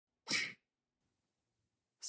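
A single short, sharp burst of breath about a quarter of a second in.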